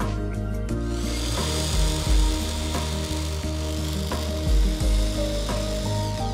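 Electric hand blender with a chopper bowl attachment running steadily, pureeing fresh herbs and oil into a green sauce; it starts about a second in and runs until near the end. Background music with a beat plays throughout.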